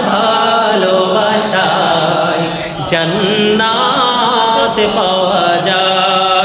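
A man chanting a devotional melody into microphones, with long held notes that waver in ornamented glides. There is a brief dip in loudness about three seconds in.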